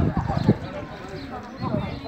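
Men talking in the background, with two short thumps about half a second apart at the start.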